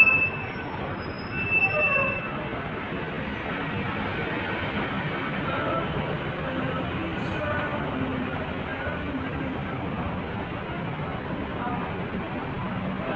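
Two short high-pitched squeals in the first two seconds, then a steady din of traffic and a busy transit stop.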